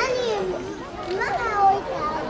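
Several people talking at once, children's high voices prominent, with one louder call about a second and a half in.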